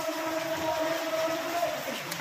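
A horn held as one long steady blast, a chord of a few fixed pitches, which stops near the end.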